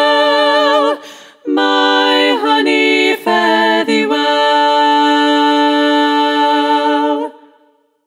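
Upper voices in three-part a cappella harmony (SSA choral arrangement) holding sung chords, with a short break about a second in and a few shorter moving phrases, then a long sustained chord that dies away near the end.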